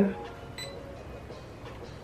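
Soft background beat music, with a short high electronic beep about half a second in from the diffuser's clock buttons being pressed during time setting.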